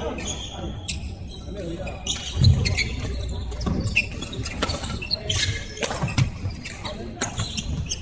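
Badminton hall ambience: sharp racket-on-shuttlecock hits and clicks from the surrounding courts, scattered irregularly, ringing in a large echoing hall, with background voices and a low thump about two and a half seconds in.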